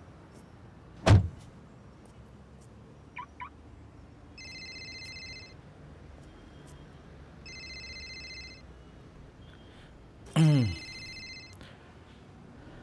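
A car door shuts with a single loud thud about a second in. Later an electronic phone ringtone trill sounds twice, a few seconds apart, and near the end a loud sound sweeps sharply down in pitch.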